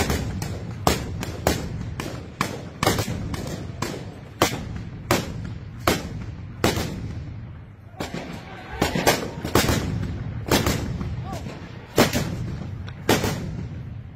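Small-arms gunfire: dozens of sharp shots at irregular spacing, some in quick pairs, each trailing off in a short echo.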